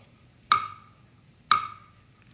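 Game-show countdown timer ticking: two sharp ticks a second apart, each with a brief bright ring, marking off the seconds of the lightning round.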